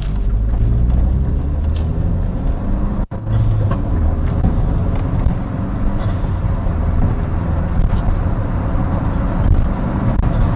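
A car driving at road speed: steady engine drone with tyre and road noise. The sound drops out for a moment about three seconds in.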